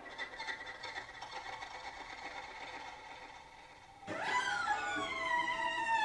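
Background music for the title sequence: quiet at first, then about four seconds in several high tones enter together and glide slowly downward.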